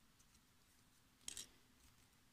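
Mostly quiet, with one brief dry rasp about a second and a quarter in: tatting thread being pulled taut with the shuttle to close a stitch.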